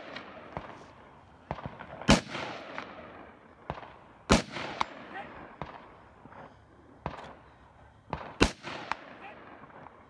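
Rifle shots fired from a barricade: three loud single shots, about two seconds in, just after four seconds and about eight and a half seconds in, with several fainter sharp cracks between them.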